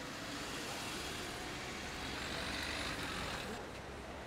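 Street ambience: a steady hum of passing traffic, with a faint high whine rising and falling a little over two seconds in.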